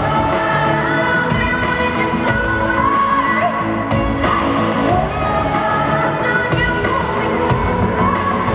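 A pop song performed live: a solo singer's voice over a full band backing.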